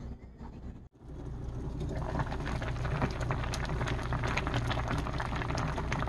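A pot of doenjang-jjigae (Korean soybean-paste stew with tofu) boiling hard, with dense, rapid bubbling and popping over a steady low hum. It starts about a second in and grows fuller over the next second.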